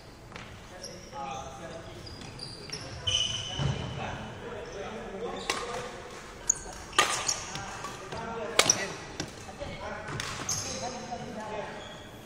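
Badminton rally in a sports hall: five sharp racket-on-shuttlecock hits, one every one and a half to two seconds, with brief shoe squeaks and footsteps on the wooden court floor between them.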